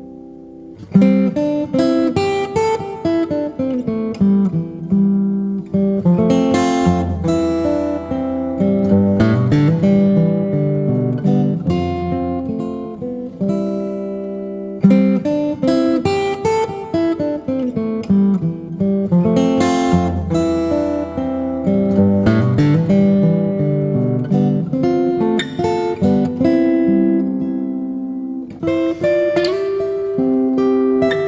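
An instrumental piece on acoustic guitar: picked notes in flowing phrases and runs, with a soft start and a clear note about a second in.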